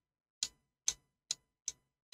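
Computer mouse clicking, four sharp single clicks at an even pace of roughly two or three a second.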